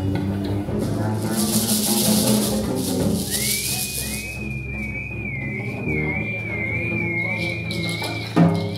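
A theremin and an acoustic guitar improvising together. About three seconds in, the theremin glides up to a high note and holds it with a wavering vibrato over low sustained guitar notes. A high hiss sounds for about two seconds before the theremin enters.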